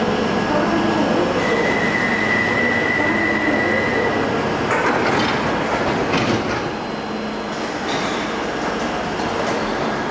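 London Underground 1972 stock tube train standing at a platform: a steady high whine for about three seconds, then a cluster of sharp clatters as the doors close, with the train starting to pull away at the very end.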